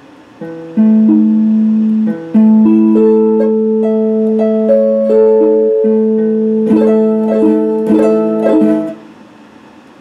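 Electric guitar picked in slow arpeggiated chords, each note ringing on over the next, quickening into faster picked chords near the end before stopping about a second before the end.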